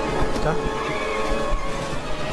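Movie soundtrack of city street traffic, with car and moped engines as a moped weaves between taxis, mixed with a brief spoken word.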